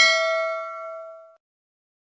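Notification-bell 'ding' sound effect of a subscribe-button animation: one bright chime of several tones that rings out and fades away within about a second and a half.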